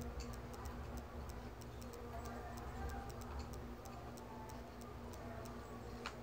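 Faint, steady ticking, a few light ticks a second, over a low steady hum.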